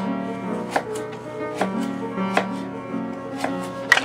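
Classical piano music playing in the background over a knife chopping food on a cutting board: about six sharp chops at uneven intervals, the loudest just before the end.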